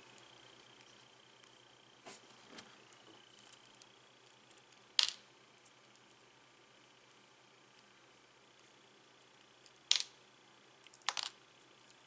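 Small metallic clicks and ticks from a miniature Phillips screwdriver backing the screws out of a rebuildable tank's coil deck and the tiny screws being handled. The clicks are scattered, and the sharpest come about five and ten seconds in, with a quick pair near the end.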